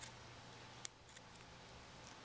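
Small scissors snipping a small piece of paper: a few short, faint snips, the clearest a little under a second in, over a low steady hum.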